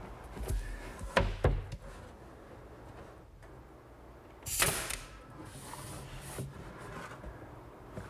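A few sharp wood knocks as a pine rail is set into the chest frame, then a single loud shot from a pneumatic finish nailer about four and a half seconds in: a sharp crack followed by a short hiss.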